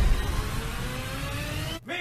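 A sound effect from the meme clip: a tone that rises slowly in pitch like a build-up, then cuts out abruptly near the end.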